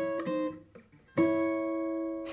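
Furch Yellow Masters Choice steel-string acoustic guitar fingerpicked: two plucked two-note shapes on the G and top E strings, stepping down chromatically. The first dies away within about a second; the second comes a little past a second in and rings on.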